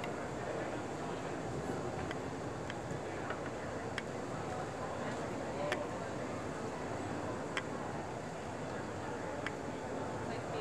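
Steady background murmur of a busy trade-show hall, distant voices blending into a hum, with a few faint clicks scattered through it.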